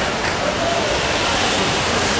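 Steady rain falling on wet paving, a continuous even hiss.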